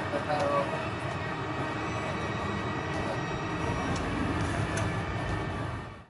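Cricket stadium crowd noise: a steady din of many voices in the stands as the crowd reacts to a wicket.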